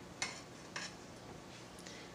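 Metal fork clinking against a dinner plate twice, about half a second apart, with a brief high ring; the first clink is the louder.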